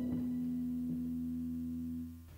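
The last held chord of the song's keyboard backing, a steady, pure-sounding tone slowly dying away.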